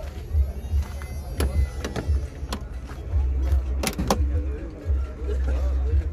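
A few sharp clicks from an old Lada sedan's door latch and handle as the door is opened, two of them close together about four seconds in. Under them runs an uneven low buffeting rumble on the microphone.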